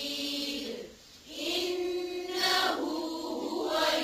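Qur'an recitation in a melodic, chanted tajweed style by several voices together, with long held notes. There is a brief breath pause about a second in.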